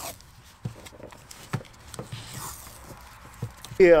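Handling noise: a few scattered light knocks and clicks over a faint rustle.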